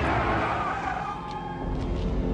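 Car tyres squealing as a large sedan skids, with its engine running.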